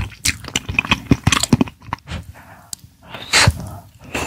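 Close-miked mouth sounds of eating a spoonful of shakshuka: a run of short wet smacks and clicks as soft egg, melted cheese and tomato sauce are taken in and chewed, with one louder, breathy burst a little after three seconds in.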